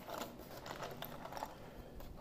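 A cardboard toy box of K'nex pieces being turned over in the hands: a quick run of light clicks and rustles that dies down after about a second and a half.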